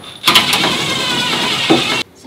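Cordless drill running at speed, driving a set screw through the sheet-metal van wall, with a steady whine and grinding. It starts about a quarter second in and cuts off suddenly at the end.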